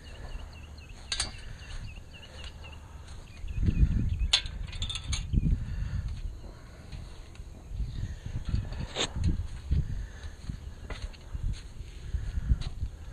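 Metal fence gate being opened and passed through: sharp clicks of the latch and gate metal about a second in, around four to five seconds in and again near nine seconds, between heavy thumps of handling and footsteps. A run of small high chirps repeats about three times a second in the first few seconds.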